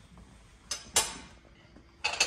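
Two sharp knocks of kitchenware about a third of a second apart, the second louder and ringing briefly, over a quiet steady background.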